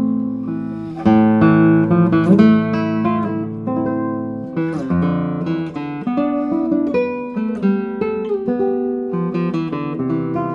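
Darragh O'Connell 2022 'Torres SE 69' classical guitar played solo, fingerpicked melody and chords with sustained bass notes, and a strong chord struck about a second in.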